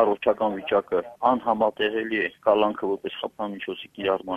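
A man speaking Armenian over a telephone line, his voice thin and narrow as a phone call sounds.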